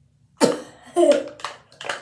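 A girl coughing: a sudden cough about half a second in, followed by more coughs and throaty voice sounds.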